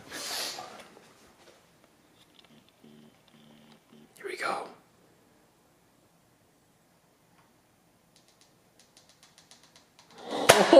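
A hushed room with a few brief whispered words, one at the start and one about four seconds in, then near quiet with faint rapid ticking near the end.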